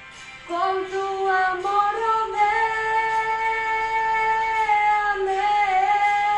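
A woman's solo voice singing a Spanish worship song: after a short breath near the start, she sings a phrase that climbs to a long held note lasting about two and a half seconds, then moves on through the melody.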